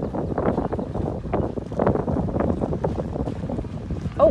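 Wind buffeting a microphone on a moving car, in irregular gusts over a low rumble.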